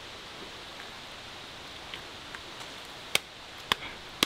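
Faint steady hiss of the quiet woodland background, broken by two short, sharp clicks a little after three seconds in, about half a second apart.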